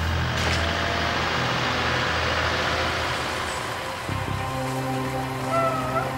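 Bark mulch pouring and sliding out of a tipped metal wheelbarrow into a trailer, a rushing, scraping noise for about three seconds.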